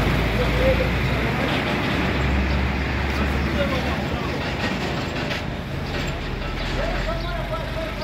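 A motor vehicle engine running steadily with a low hum, with road noise around it.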